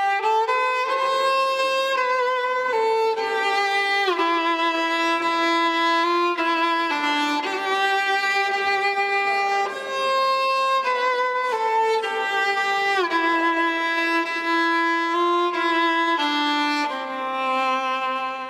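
Solo violin playing a slow melody of held notes, with a few short downward slides between notes.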